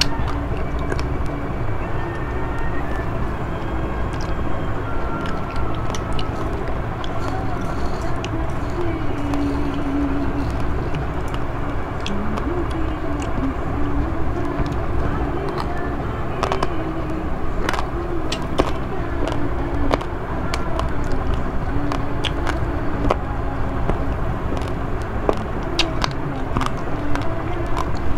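Metal spoon clicking against a bowl and close-up chewing of rice mixed with Milo powder, heard as scattered short clicks over a steady low rumble.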